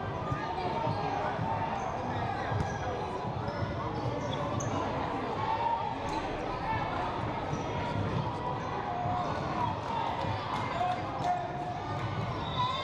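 Youth basketball game on a hardwood gym floor: the ball being dribbled in irregular low thuds, under a continuous mix of voices from players, benches and spectators.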